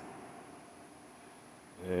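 Quiet shop room tone with a faint hiss and no machine running; a man starts speaking near the end.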